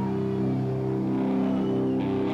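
Metal band playing live, with electric guitars and bass holding long sustained notes.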